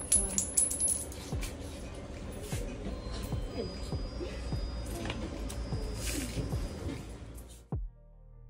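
Repeated small clicks and clinks of items being handled on a kiosk counter, over faint voices and music.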